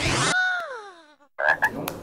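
The background music cuts off, and a comic sound effect slides down in pitch for about a second. A short gap follows, then a few brief clicks and blips.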